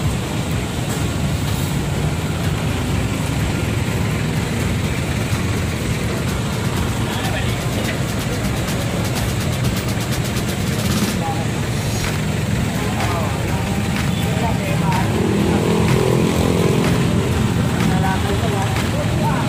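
A vehicle engine running steadily with a low rumble, mixed with people talking nearby; the voices grow louder near the end.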